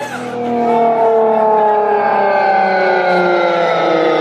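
DJ set playing through a concert PA: a sustained, many-toned sound that glides slowly down in pitch, swelling in over the first second.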